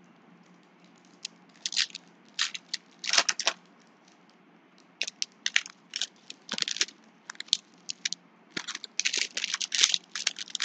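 Foil wrappers of trading-card packs crinkling and rustling in irregular bursts as they are handled and opened, beginning about a second and a half in and thickening near the end.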